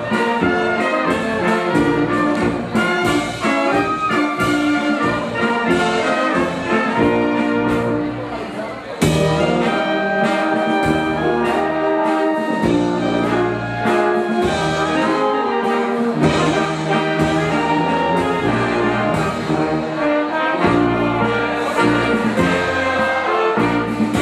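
Brass band playing lively dance music for folk dancing, with a steady low beat under the melody. The music dips briefly about eight seconds in and comes back in full about a second later.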